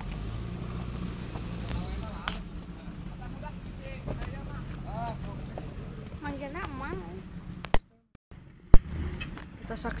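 Off-road 4x4 engine running steadily at low revs, with voices talking in the background. Near the end the sound cuts out for about half a second between two sharp clicks.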